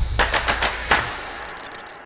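Closing hits of a channel intro music sting: a quick run of about five sharp percussive strikes in the first second, ringing out and fading away.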